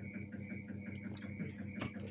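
A person drinking water from a plastic bottle over a steady low hum with a faint regular pulse, and a sharp click near the end.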